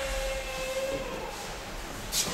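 A long, drawn-out shout (kiai) from an aikido practitioner, falling in pitch and then held on one note before fading out a little over a second in.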